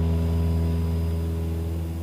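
Steady drone of a light single-engine Cessna's piston engine and fixed-pitch propeller in cruise, a low even hum with a row of overtones above it.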